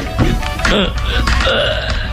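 A man's strained vocal effort over dramatic background music: a radio-drama actor straining to burst the boards of a wooden crate.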